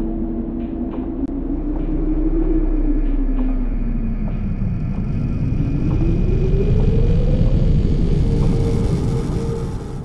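Car engine running with a deep rumble, its pitch dipping and then climbing before it holds steady, the sound starting to fade near the end.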